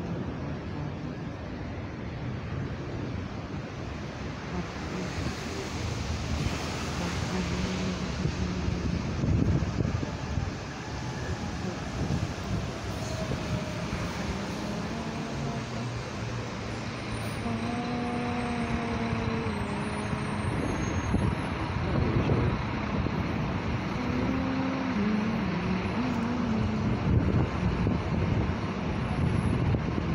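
City street traffic running steadily throughout, with a vehicle engine passing now and then, under the murmur of people talking.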